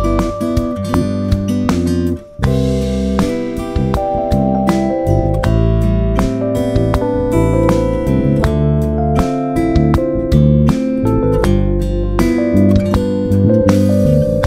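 A song backing track of acoustic guitar and drums playing, with an electric bass guitar recorded live over it through a Steinberg UR RT4 audio interface at its default setting, heard in the monitor mix. There is a brief drop in the sound about two seconds in.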